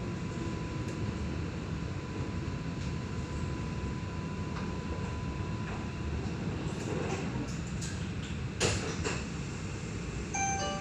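Cabin sound of an Alstom Citadis X05 light rail tram running and drawing into a stop: a steady low rumble, a faint steady whine that fades out about halfway through, and a few sharp knocks near the end.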